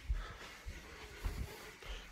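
Quiet room tone with a few faint, short, low thumps.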